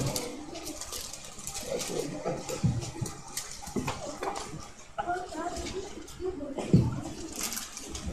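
Bible pages being leafed through: a run of soft, irregular paper rustles and flicks, with faint voices murmuring.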